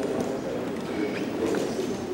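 Indistinct low murmur of people talking among themselves, with no clear words.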